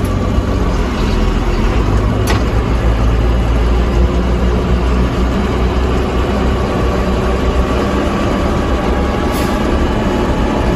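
JCB Fastrac 3185 tractor's diesel engine running under load as the tractor pulls away from a standstill in high range, heard from inside the cab. The engine note strengthens about a second in, and there is a short click about two seconds in.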